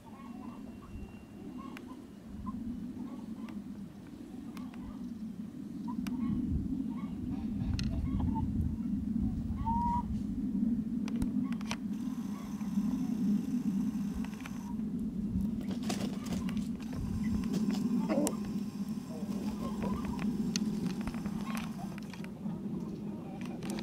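Free-range chickens foraging, giving a few soft, scattered clucks over a steady low rumble.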